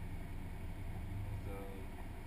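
Subaru Impreza's naturally aspirated flat-four engine idling steadily, heard as a low hum from inside the cabin while the car waits in line.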